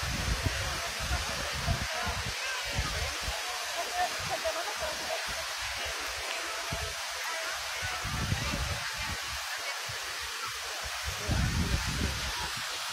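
Steady rush of water from the Magic Fountain of Montjuïc's large jets, with wind rumbling irregularly on the microphone.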